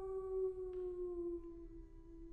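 Soprano holding one long, straight-toned note without vibrato that slides slowly downward in pitch and fades to a softer tone a little past halfway, with a brief noisy click just under a second in.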